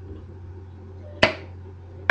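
Cap of a Magic Hat #9 beer bottle being levered off: a single sharp click a little over a second in, over a steady low hum.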